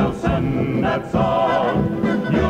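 A group of voices singing the chorus of an old-time campaign song with instrumental accompaniment.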